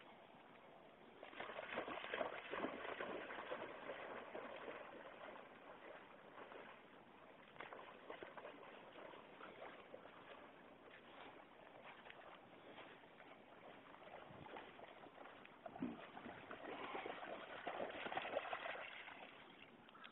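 Faint, irregular splashing and sloshing of shallow water as a dog runs and wades through it. It comes in two spells, from about a second in until about five seconds, and again near the end, with quieter lapping water in between.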